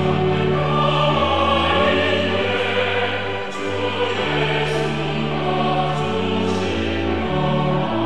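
Mixed church choir singing a slow hymn in sustained chords, accompanied by violin and piano.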